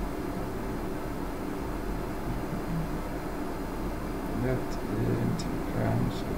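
Steady room background noise with a low hum, and a few brief murmured voice sounds in the last two seconds.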